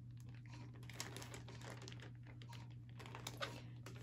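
Faint crinkling and light clicks of a clear plastic sheet protector being handled and pressed by hands against a coffee can, over a steady low hum.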